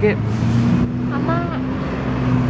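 Steady low drone of a motor vehicle engine running nearby, with a brief hiss about half a second in.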